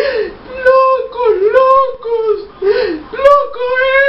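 A woman singing in a tearful, wailing voice: several short, drawn-out phrases whose pitch slides up and down, ending on a long held note, with no accompaniment.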